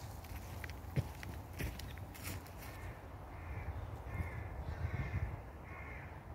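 A crow cawing: four short, harsh calls about a second apart in the second half, over footsteps on dry leaf litter, which give a few scattered clicks in the first half.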